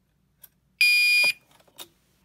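Fire alarm horn/strobe sounding one short, loud electronic horn blast of about half a second: the walk-test signal that the key-activated pull station has registered. Small clicks come just before and after the blast.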